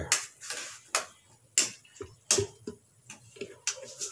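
Spatula scraping and knocking against a metal frying pan while stirring a thick tomato sauce: irregular sharp clicks and scrapes, about two a second.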